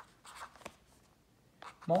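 Pen writing numbers on a pad of grid paper: a few short scratchy strokes.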